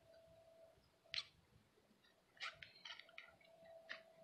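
Near silence broken by a few faint, short scratches of fingers pushing potting soil over tulip bulbs: one about a second in and a handful more in the second half.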